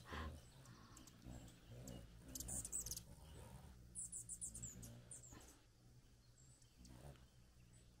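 Hummingbirds chipping: two short runs of faint, very high, quick chirps about two and a half and four seconds in, over near silence, as males chase each other around a feeder.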